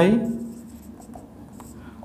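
Marker pen writing on a whiteboard: faint short scratching strokes, with the tail of a spoken word at the start.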